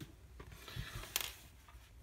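Faint handling noise of a plastic Lego minifigure being picked up in the fingers, with one short sharp click just over a second in.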